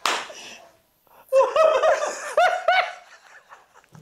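A single hand clap at the start, then a run of high-pitched laughter in quick repeated 'ha' bursts from just over a second in until about three seconds.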